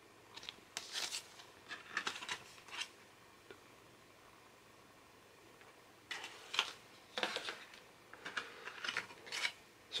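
Card CD sleeves and paper rustling and sliding in the hands as discs are handled, with light taps and scrapes, in two spells with a pause of about three seconds between them.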